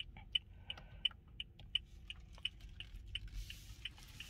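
Toyota Fortuner's turn-signal flasher ticking with the hazard lights on: an even run of light, sharp ticks, about three a second.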